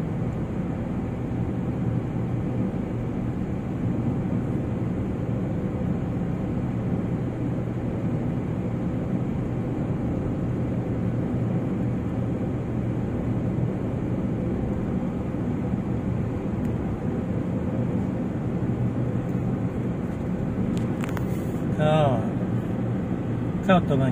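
Steady in-cabin driving noise from a car on the road: a low, even rumble of engine and tyres. About two seconds before the end a brief voice-like sound cuts in.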